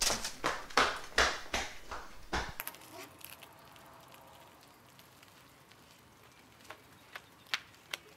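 Flip-flops slapping on a hard tiled floor in a quick run of steps, about seven sharp slaps in two and a half seconds. The sound then drops suddenly to faint, quiet outdoor street ambience with a few soft clicks near the end.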